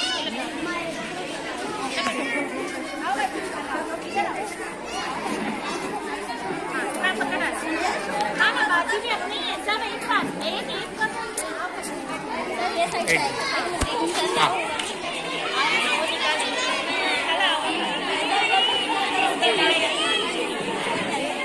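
Crowd chatter: many overlapping voices of a small group of people talking at once.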